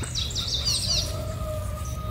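A small songbird singing a rapid run of high, downward-slurred chirps that stops about a second in, over a faint steady hum.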